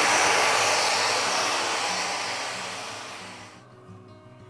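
Festool Rotex 150 sander in full rotary mode running a 2000-grit foam abrasive over a guitar's lacquer finish, a fine step that is nearly buffing and takes almost nothing off. It runs steadily, then fades and stops near the end.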